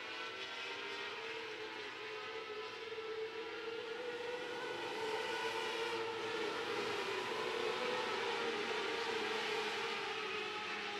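Several 600cc micro-sprint race cars running hard on track: a steady engine drone of several stacked tones that grows louder from about halfway as the cars come round toward the grandstand.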